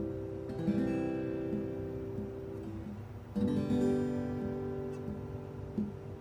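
Steel-string acoustic guitar strummed in a slow chord loop. A C chord rings and fades, then a fresh strum a little past halfway changes to a G chord, which also rings out.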